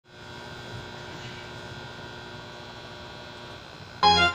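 Steady electrical hum with a faint background hiss: room tone.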